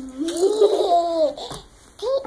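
An infant laughing: one drawn-out, pitched laugh of about a second that rises and then falls in pitch.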